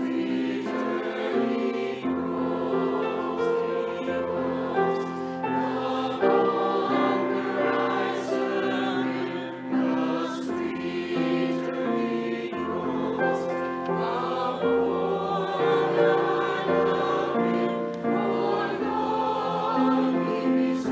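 Mixed church choir of men's and women's voices singing a slow anthem in held notes, directed by a conductor.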